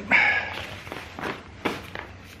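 Nylon chair-seat fabric rustling loudly as it is pulled over a lightweight pole frame, then two light knocks from the frame in the second half.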